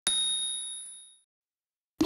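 A bright ding sound effect, struck once and ringing away over about a second, then silence.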